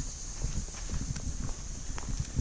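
A hiker's footsteps on a dirt forest trail: irregular crunching steps over leaf litter and twigs, with a steady high hiss underneath.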